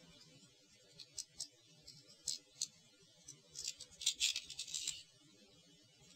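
Small hard-plastic model-kit parts being handled and fitted together: faint clicks and scraping rubs, scattered at first, then a denser run of rubbing and clicking about three and a half to five seconds in, as the grey beam-shield emitter is worked into the clear purple plastic beam shield.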